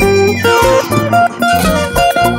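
Live band music led by a plucked guitar over a steady bass line, with no singing; a quick falling run sounds about half a second in.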